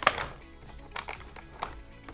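Soft background music with a few light taps and clicks from hands working plastic plant pots and potting compost.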